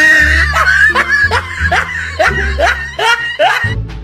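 Comic laughter, in short rising bursts about three a second, over background music with a steady bass line.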